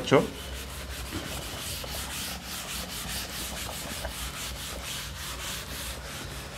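Chalkboard duster rubbing back and forth across a chalkboard, wiping off chalk writing in a steady run of scrubbing strokes.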